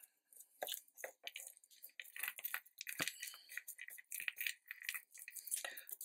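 Faint, irregular rustling and light clicks of card and paper being handled and pressed between the fingers as a glued card circle is stuck in place under an acetate flap, with one sharper tap about three seconds in.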